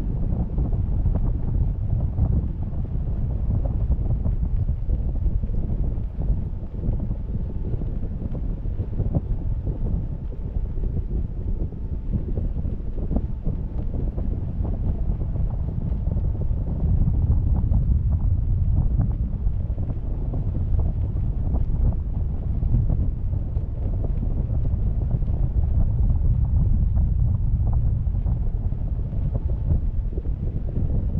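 Wind rushing over the microphone of a camera hanging under a parasail: a steady low rumble that gets a little louder about halfway through.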